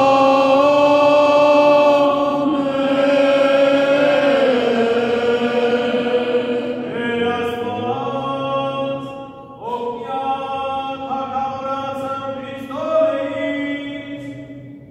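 Unaccompanied Armenian liturgical chant by a man's voice: long held notes that step up and down in pitch, then shorter phrases with brief breaks in the second half.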